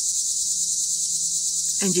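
Steady, high-pitched insect chorus, an unbroken drone that carries on right through the pause in speech.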